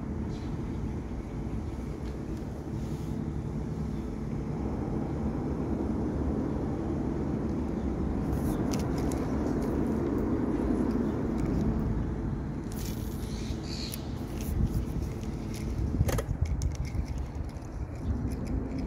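Minn Kota tiller trolling motor running: a steady electric hum that swells slightly in the middle, with water churning at the prop. A few sharp clicks and knocks come near the end.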